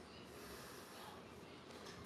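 Near silence: faint, even room tone in a pause between speech.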